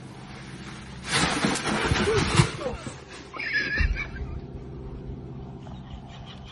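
A person's loud, rough cry of about a second and a half, followed by a brief higher-pitched yelp, over a steady low hum.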